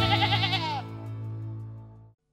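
A sheep bleating once, a wavering call of under a second that drops at its end, over the last held chord of a jingle, which then fades out.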